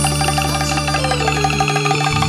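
Live band music, an instrumental passage: held chords and a fast run of repeated notes over a steady bass, the deepest bass dropping out near the end.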